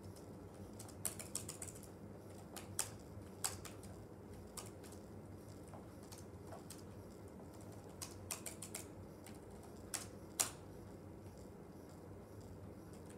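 Typing on a Chromebook keyboard: short, irregular bursts of key taps with pauses between them.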